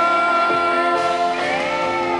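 A live rock band playing, with a voice holding a long sung note over electric guitar; the pitch slides upward near the end.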